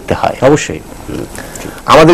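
A man speaking in Bengali, breaking off for about a second in the middle before going on.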